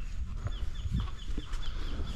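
A rapid, even series of short, high chirps, each falling slightly in pitch, about five a second, from an animal calling, over a low rumble.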